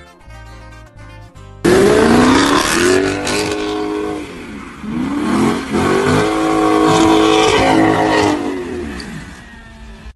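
A Dodge SRT's engine revving hard, cutting in suddenly after a bit of slow guitar music. Its pitch climbs, drops back about the middle, climbs again and holds high, then winds down near the end.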